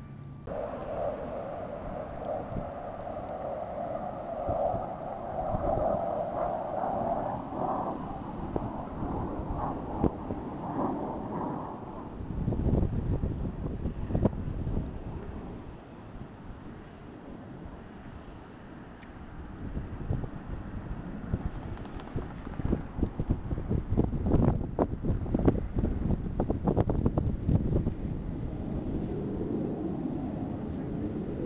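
Distant military jet aircraft rumbling across the sky, with wind buffeting the microphone, the gusts choppiest in the last third.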